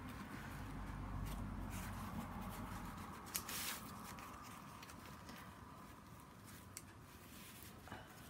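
Hands smoothing and pressing a sheet of fabric flat over cardboard: faint rustling and brushing, with a brief louder rustle about three and a half seconds in.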